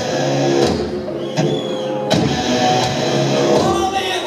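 A rock band playing live at full volume, with distorted electric guitars over drums and sharp drum hits.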